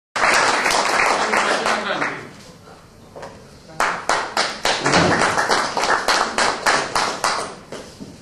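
Audience applauding, with individual handclaps close to the microphone, several a second; the applause dies down about two seconds in and starts up again nearly a second later.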